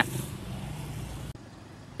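Outdoor street traffic noise, a steady rush with a faint low hum, that drops off abruptly to a quieter background about a second and a half in.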